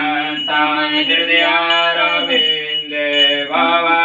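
A man chanting puja mantras in a sung, melodic style, holding long notes.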